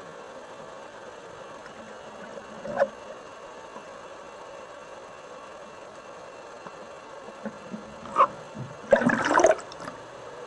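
Water heard through a submerged camera: a steady hiss with short bursts about three and eight seconds in, and a louder rush of water lasting about half a second near the end.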